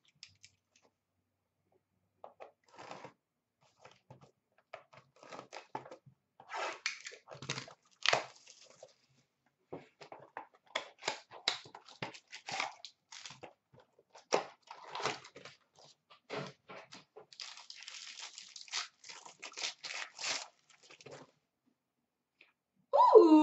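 A sealed trading-card hobby box being opened by hand: wrapper and packaging torn and crinkled in irregular short rustles and scrapes, with a longer stretch of steady crinkling near the end.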